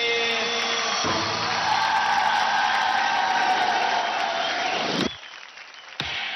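Mechanical-style electronic sound effect in a dance track: a loud whirring, hissing noise with pitch sweeping down, which cuts off suddenly about five seconds in.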